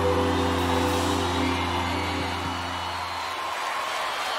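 A live band's final held chord dying away about three seconds in, over a large crowd cheering.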